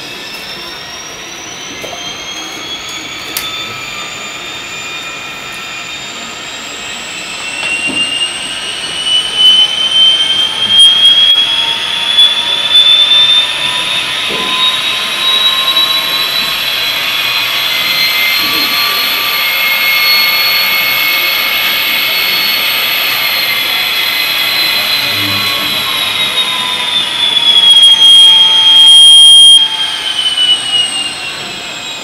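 Model diesel locomotive's TCS WOWDiesel sound decoder playing a turbocharged EMD 645 prime mover: a turbocharger whine made of several tones rising together in pitch over about ten seconds, holding high, then falling away near the end. It gets briefly louder just before the end.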